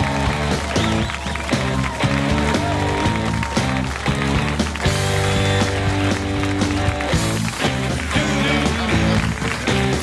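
Talk-show house band playing an upbeat tune with a steady beat.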